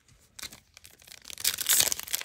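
Foil wrapper of an Upper Deck AEW trading card pack crinkling and tearing as it is handled and opened, starting about a second and a half in and getting louder.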